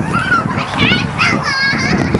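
High-pitched children's voices shouting and calling out, unintelligible, over a steady low background rumble.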